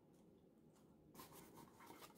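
Near silence, with faint rustling and rubbing of cardstock being handled, a little more audible in the second half.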